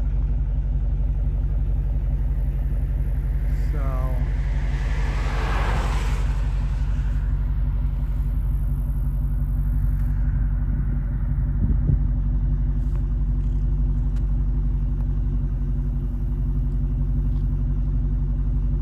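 A vehicle engine idling with a steady low rumble. About four seconds in, a passing vehicle's noise swells and fades over a few seconds. There is a short knock near the twelve-second mark.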